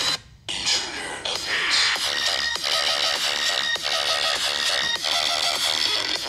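Electronic dance track played loud through a Samsung Galaxy S10+ phone's built-in speakers. The music drops out for a moment just after the start, then plays on.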